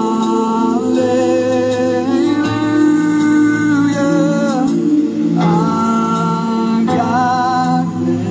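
A congregation singing a worship song in long held notes, the melody stepping to a new pitch every second or two.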